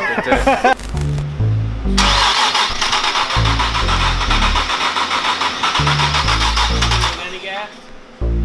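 Starter cranking the Stillen-supercharged Nissan 370Z's 3.7-litre VQ37VHR V6 for about five seconds with a fast, even rhythm, turning over without firing; the crew puts this down to the fuel pump being left unplugged. Background music with a stepping bass line plays under it.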